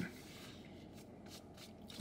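A quiet pause filled with faint rustling: a few soft rubs or brushes, such as clothing or a hand shifting, over low background hiss.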